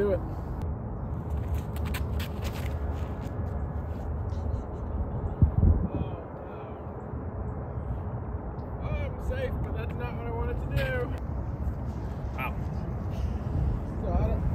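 Steady low outdoor rumble, with one loud thump about five and a half seconds in and faint voices in the second half.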